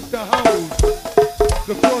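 Live go-go band playing: drums and percussion keep a steady go-go beat, and the lead talker's voice comes in over it near the end.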